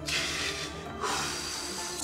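A man sobbing, with two long breathy gasps about a second apart, over soft background music.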